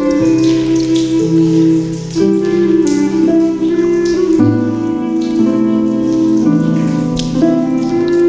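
Native American flute holding long, slowly changing notes over a Celtic harp accompaniment, with a soft rain-and-drip nature layer mixed underneath.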